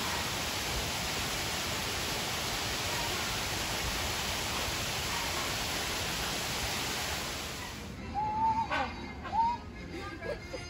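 Steady rushing of water from artificial waterfalls pouring over a rock wall, which cuts off abruptly about eight seconds in.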